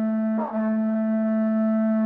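A horn blowing one long, steady, single-pitched note, broken off and sounded again about half a second in.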